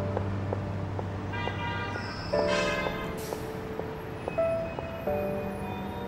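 Background score music: soft, bell-like sustained notes that change every few seconds over a low held tone, with a brief high shimmering flourish about two to three seconds in.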